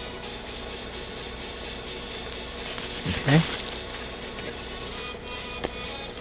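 Steady low background hum with a few faint unchanging high tones and no distinct events; no clear patter of falling soil stands out.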